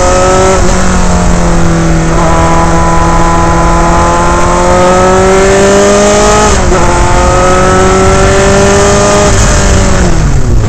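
Dallara Formula 3 car's Alfa Romeo four-cylinder racing engine at full throttle, heard from the cockpit: the engine note climbs steadily at high revs and drops briefly in pitch about half a second in, about two-thirds of the way through, and near the end.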